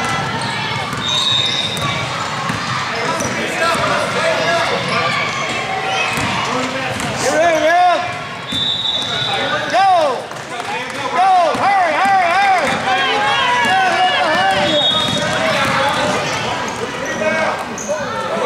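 Youth basketball game in a gym: a basketball bouncing on the hardwood court and players' sneakers squeaking, under a steady mix of players' and spectators' voices in the hall's echo. From about 7 s to 15 s in, the squeaks come thick and fast.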